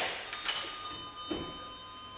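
A sharp mechanical click, then about half a second in a metallic ding that rings on with several high tones slowly fading: a lift's arrival chime.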